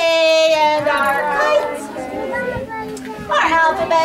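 A woman singing a children's song, with long held notes that bend in pitch, and young children's voices joining in.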